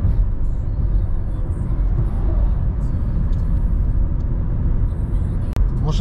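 Cabin sound of a 2005 Honda CR-V under way: its four-cylinder engine running steadily under load, with road and tyre noise.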